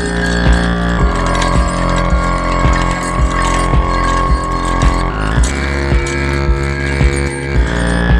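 Live electronic music jam: sustained synth chords played on a keyboard over a steady beat of about two hits a second, run through a Chase Bliss MOOD granular micro-looper pedal. The chord changes about five seconds in.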